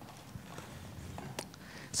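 Quiet room tone with a few faint, scattered clicks, the clearest about one and a half seconds in.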